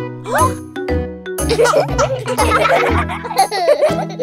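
Upbeat children's-song backing music, with a group of young children laughing and giggling together from about a second and a half in.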